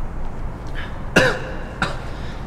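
A man coughs to clear his throat: a sudden loud voiced cough a little over a second in, then a second short one just before the end.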